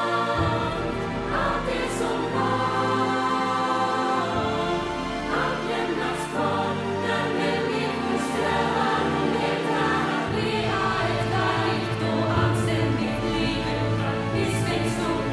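A musical-theatre ensemble singing in chorus over instrumental accompaniment, held chords that shift every few seconds.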